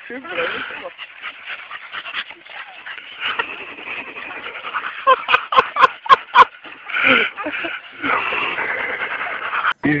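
A big dog making breathy, effortful sounds as it hangs by its jaws from a rope in a tree and swings, with a person laughing. About five seconds in there is a quick run of six or seven short, sharp sounds.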